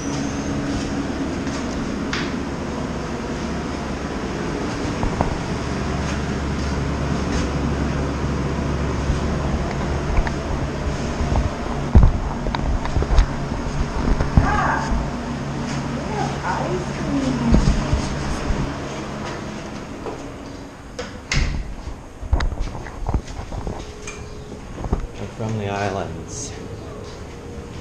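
Steady hum of a hotel ice machine and vending machine running in a small room, with a few knocks and clatters in the middle. After about 20 s the hum falls away, leaving scattered knocks and handling noise.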